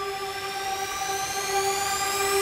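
Electronic intro: a steady synthesized tone held on one pitch, with a hissing sweep rising slowly in pitch above it.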